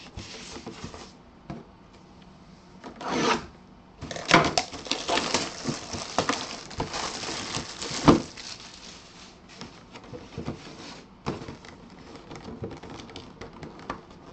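Clear plastic shrink wrap crinkling and tearing as it is stripped off a cardboard box. The crinkling is densest in the middle and ends in a sharp rip about eight seconds in, followed by lighter crackles as the loose wrap is handled.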